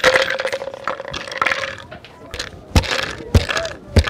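Hammer driving nails into a thin wooden board: sharp knocks about 0.6 s apart in the second half, after a couple of seconds of clatter from handling the board.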